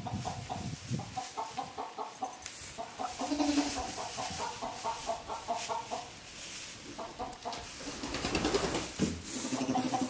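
Chickens clucking over and over in short, stuttering notes, with hay rustling under moving animals. A goat kid starts bleating near the end.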